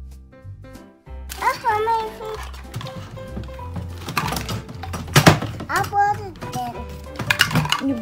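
Background music with a steady bass beat, over which a toddler's high voice vocalizes in sing-song without clear words. Plastic toy pieces clatter a few times in the middle and near the end.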